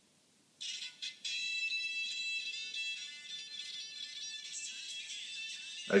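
Song playing from a Sony Xperia Z smartphone's small built-in speaker, thin and tinny with no bass, starting about half a second in.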